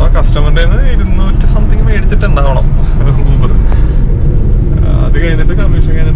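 A man talking inside a car cabin over a loud, steady low rumble of road and engine noise from the moving car.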